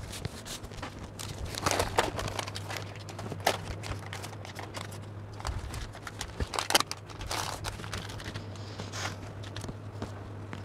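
Paper pattern pieces and brown drafting paper rustling and crinkling as they are handled and folded on a table, in irregular bursts with short pauses between.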